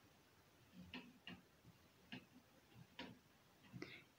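Near silence with a few faint, unevenly spaced taps of a marker pen on a whiteboard as a sentence is written.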